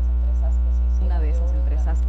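Loud, steady low electrical hum, like mains hum, running under the audio. A voice from the playing video clip resumes about a second in.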